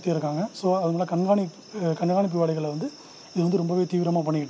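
A person talking in short phrases with brief pauses, over a faint, steady high-pitched tone in the background.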